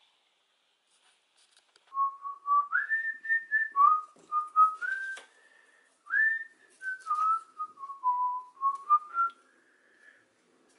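A person whistling a tune, a melody of held notes that step up and down, starting about two seconds in and stopping just before the end, with a few faint clicks of handling.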